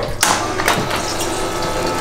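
Spiral gold-wheel concentrator starting up: its small geared motor turns the spiral wheel while water sprays from the spray bar and runs off the wheel, splashing into the tub below. It starts suddenly a moment in, then runs steadily.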